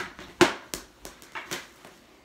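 Sharp knocks and clacks of a goalie's stick and pads on a hard floor, about five in two seconds, the loudest about half a second in.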